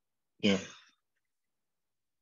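Speech only: one short spoken "yeah" about half a second in.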